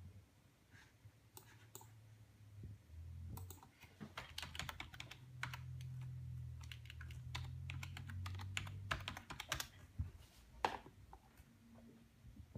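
Typing on a computer keyboard: a run of quick key taps, densest in the middle, with a low hum underneath, ending in a single louder keystroke near the end.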